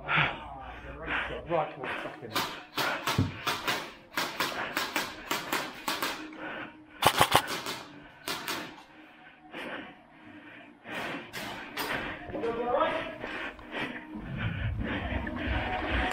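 Airsoft guns firing in short, irregular clusters of sharp clacks, with voices in the background.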